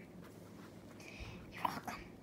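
Soft whispering, briefly louder near the end.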